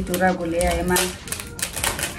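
A quick run of small clicks and crinkles as a little jewellery packet is handled and opened, starting about halfway through.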